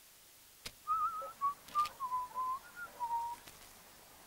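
A person whistling a short tune of about seven wavering notes that drift lower in pitch, starting about a second in and ending past three seconds.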